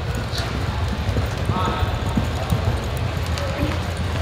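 A horse's hoofbeats on soft arena dirt as it lopes, a run of dull thuds over a steady low rumble, with indistinct voices in the background.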